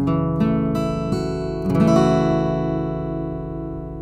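Acoustic guitar strumming an F-sharp minor 7 chord voiced 242252, a few strokes over the first two seconds, then the chord left to ring and slowly fade.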